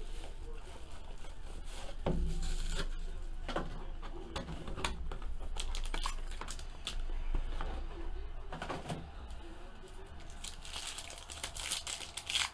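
Trading-card box and packaging handled and opened by hand: rustling and crinkling, with scattered light clicks and taps.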